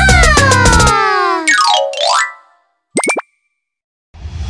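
Cartoon sound effects at the close of a children's song: the backing music stops about a second in, under a long, smooth falling slide in pitch. A quick down-and-up boing follows, then a short, bright ding about three seconds in.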